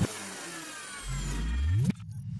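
Synthesized logo-reveal sound effects: falling high-pitched sweeps over a low rumble, then a low tone rising steadily in pitch that cuts off suddenly just before the end.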